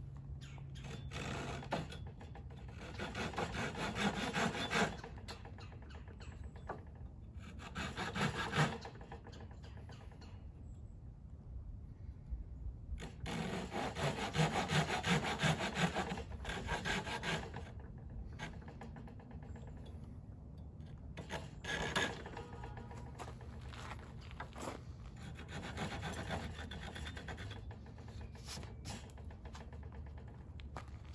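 A blade cutting and scraping a notch into a tulip poplar fireboard, in bouts of rapid strokes a few seconds long with short pauses between.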